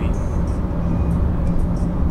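Steady low road and engine noise inside a car cruising along a dual carriageway, with a constant low hum.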